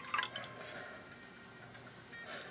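Water poured from a glass measuring cup into a saucepan, the stream thinning to a few drips within the first second.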